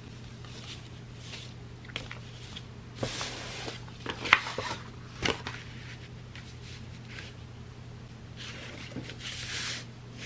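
Hands handling cotton fabric and a sheet of paper on a tabletop: soft rustles and a few light taps, with a longer rustle near the end as the paper is smoothed down, over a steady low hum.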